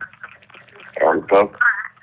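A voice coming over a telephone line on speakerphone, thin and narrow-sounding, after a click as the call connects; the loudest part comes about a second in.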